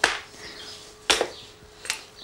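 Wooden pieces knocked down on a workbench: three sharp wooden knocks, the first the loudest, the next about a second later and a lighter one near the end.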